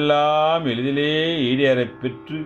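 A man singing a slow Tamil Saiva devotional hymn in a drawn-out chanting style, one long melodic phrase that dips in pitch partway and ends just before the close, over a steady instrumental drone.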